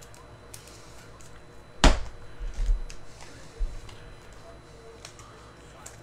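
A single sharp knock about two seconds in, among scattered fainter clicks and taps.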